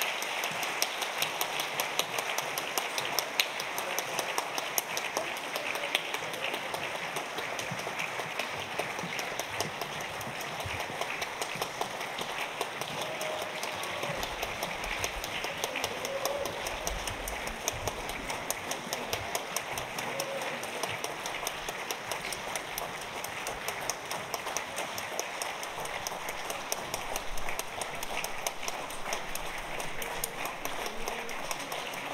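Audience applauding steadily in a concert hall.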